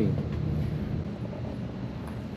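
Steady low background rumble, with the end of a spoken word right at the start.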